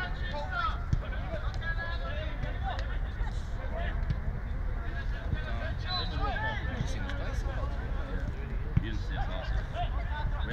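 Football players calling and shouting to each other across the pitch during a match, several voices at a distance, with a couple of sharp knocks and a steady low rumble underneath.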